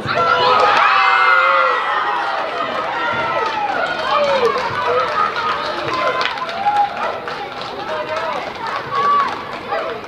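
Many voices of spectators and players shouting and cheering as a goal goes in. Loudest in the first two seconds, then scattered excited calls and chatter.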